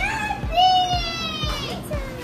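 A young child's voice: one long, high-pitched drawn-out vowel starting about half a second in, slowly falling in pitch, with background music underneath.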